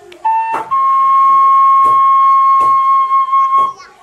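A flute holding one long note, stepping up a little in pitch about half a second in and held until a breath break near the end, with a few soft taps underneath.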